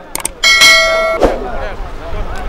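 Subscribe-button sound effect: a quick mouse click, then a loud, bright notification-bell ding that rings for under a second. Crowd noise from the horsemen's field follows.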